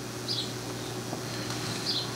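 Room tone in a meeting room between speakers: a steady low hum under faint background noise, with two faint high blips.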